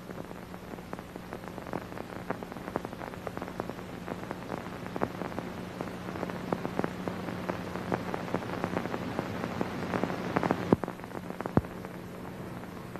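Crackle and pops of an old, worn film soundtrack over a steady hiss and low hum. The clicks come irregularly, several a second, with a couple of louder pops near the end.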